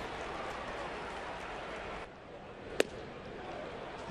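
Ballpark crowd noise, with one sharp pop near the end as a fastball smacks into the catcher's mitt.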